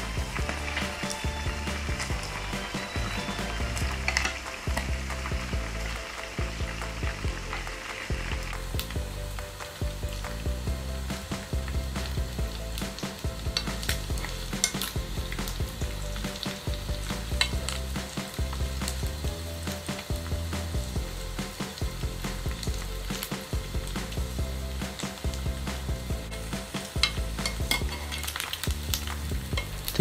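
Frog pieces frying in hot oil in a pan: a continuous sizzle full of crackles and spattering pops, with chopsticks turning the pieces as they fry golden and crisp.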